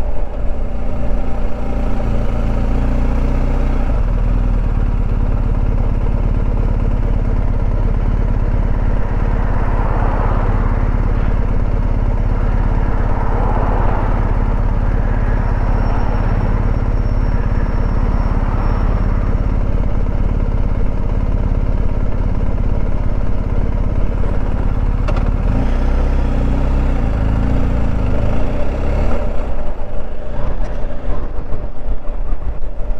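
BMW R1250 GS boxer-twin engine idling steadily in neutral with the bike at a standstill. Its note changes near the end as the bike gets going again.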